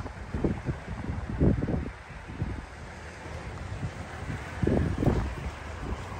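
Wind buffeting a phone microphone: an uneven low rumble that swells in gusts.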